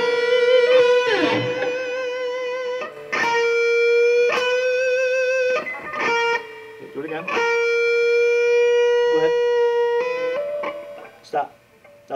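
Electric guitar holding a B note with vibrato, struck three times, each note sustained for two or three seconds with a wavering pitch; near the end the pitch steps slightly higher. It is a bend-to-B and vibrato exercise on the B string, which the teacher hears as an out-of-tune B because the string stays bent sharp.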